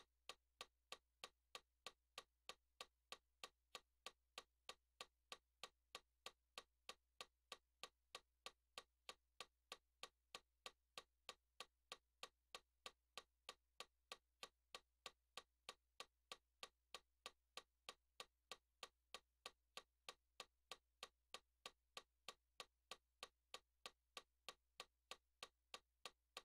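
Faint, steady ticking: identical sharp clicks at an even pace of a little under two a second, over a faint low hum.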